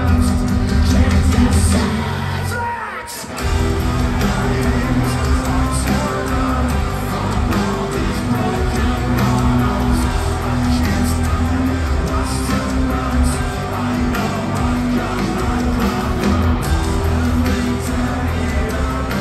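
Metalcore band playing live, recorded from the crowd: guitars, drums and sung and shouted vocals. The music drops away briefly about three seconds in, then the full band crashes back in.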